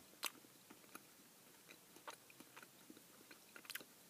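Near silence with a few faint, soft clicks of biting into and chewing a piece of marzipan candy, a small cluster of them near the end.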